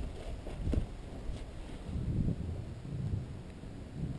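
Wind rumbling on a body-worn camera's microphone as a horse moves close by in a sand pen, with a few soft thuds from its hooves and the handling of the camera.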